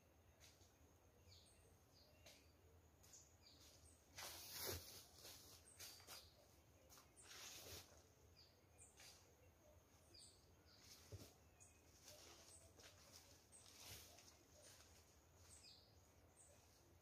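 Faint rustling of dry leaf litter as a person moves and handles a sack, loudest about four seconds in and again near eight seconds, with scattered faint bird chirps.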